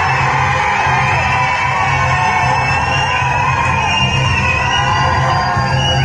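Film soundtrack music playing loud over a cinema's speakers as the title card comes up, with a crowd of fans yelling and cheering over it.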